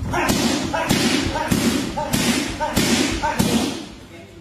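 A fast combination of about six strikes landing on Thai pads, a sharp smack roughly every 0.6 s, each followed by a short voice call.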